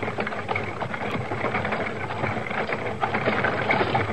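Radio drama sound effect of horses approaching: a steady clatter of many hoofbeats.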